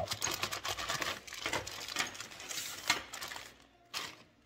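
Clear plastic bags of small metal hardware crinkling and clicking as they are handled and set down on a steel table, a quick run of small clicks and crackles that stops about half a second before the end, followed by a single click.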